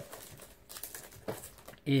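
Crinkling and rustling of plastic packaging on a Blu-ray case as it is picked up and handled, with small clicks of the case.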